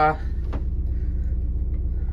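Steady low mechanical rumble from running machinery on board, with no water heard flowing.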